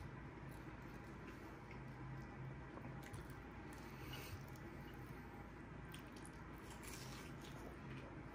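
Faint close-up chewing of a crunchy Hot Cheeto-coated fried chicken strip, with scattered soft crunches and wet mouth sounds.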